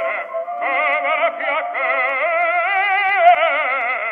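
An early, tinny-sounding gramophone recording of an operatic baritone singing, holding long notes with a fast vibrato. The line rises to a louder held note about three seconds in.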